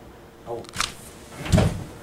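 A short 'oh', then a heavy, deep thump about a second and a half in: a man's body and head slumping onto the poker table.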